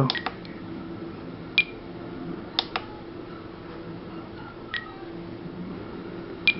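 A few short, sharp beep-clicks from a Spektrum DX18 radio transmitter as its controls are pressed and its menu advances: one about one and a half seconds in, a quick pair near the middle, and one near the end. A faint steady hum runs underneath.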